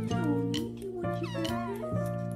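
A kitten meowing over background music, with a high, wavering meow past the middle.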